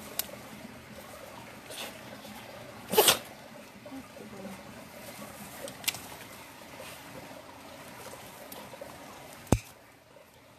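Pet nail clippers snipping through a dog's claws: several short sharp clicks a second or more apart, the loudest, a double snap, about three seconds in.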